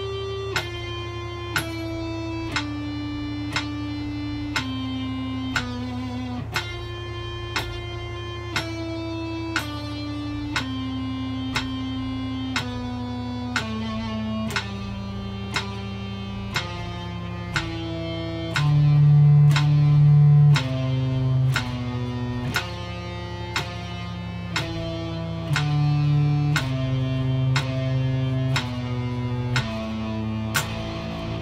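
Electric guitar playing a single-note practice exercise in steady, even notes, one every two-thirds of a second or so, the line stepping down in pitch. A click marks each beat, and the lowest notes, about two-thirds of the way through, are the loudest.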